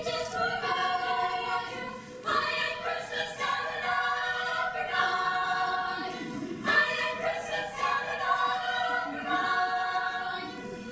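Girls' concert choir singing in harmony, holding chords that shift about two seconds in and again near seven seconds.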